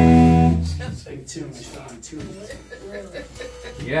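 Amplified guitar chord struck loudly and left to ring, fading away over about a second, then quieter murmured talk.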